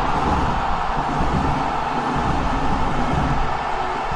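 A loud, steady rushing roar with a deep rumble beneath it, no speech: the sound effect of an animated title sequence.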